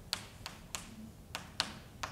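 Chalk tapping and knocking on a blackboard while writing: about five sharp, uneven taps in two seconds.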